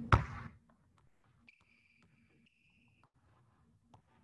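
One loud basketball bounce with a brief echo right at the start, followed by faint scattered taps and a faint high squeak lasting about a second and a half in the middle.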